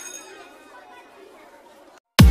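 Faint chatter of several voices, fading away.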